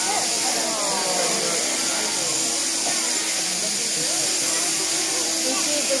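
Sheep-shearing handpiece on an overhead drive running steadily as it cuts through the fleece, a constant hum with hiss above it.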